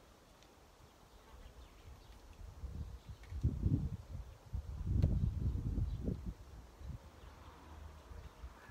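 Wind buffeting an outdoor microphone: an irregular low rumble in gusts that builds about two seconds in, is strongest around the middle, and dies away near the end.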